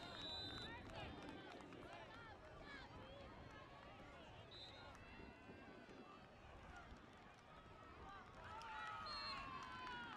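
Faint, overlapping voices of many people across an open sports field: spectators and young players talking and calling out, none of it clear enough to make out as words.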